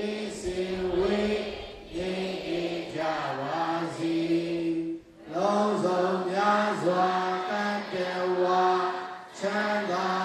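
A Buddhist monk chanting into a microphone. The male voice holds long, level notes in phrases, breaking briefly about every three to four seconds.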